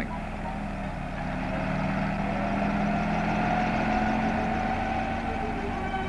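Helicopter engine running steadily, its hum rising a little in pitch and loudness over the first couple of seconds, then holding.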